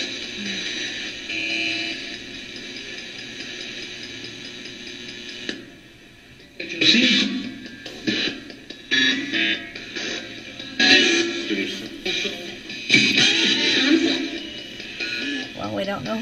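RadioShack 12-150 radio used as a ghost box, sweeping through AM stations and played through a guitar amp. It gives steady static and hiss for the first five seconds or so, then after a brief drop it gives choppy fragments of broadcast voices and music, each cut off within a second as the tuning jumps on.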